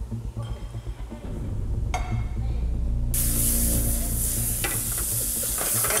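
Chicken pieces sizzling as they fry in a pan; the sizzle sets in about halfway through after a muffled, low opening, with a brief utensil clink near the end.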